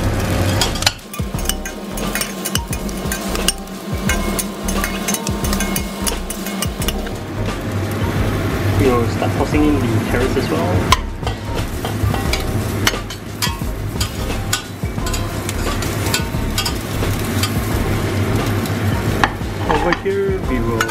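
Anchovies, onion and peppercorns sizzling in hot oil in a stainless steel pot, with a metal spatula stirring and scraping in it. In the second half, pieces of carrot and other vegetables are tipped in from a plate.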